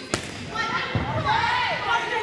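Volleyball being struck during play, a sharp hit just after the start and another about a second later, with players' voices calling faintly behind.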